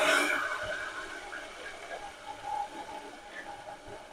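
Steel mixer-grinder jar knocking and scraping against an aluminium cooking pot as ground paste is emptied into it: a clatter at the start that fades into faint metallic ringing.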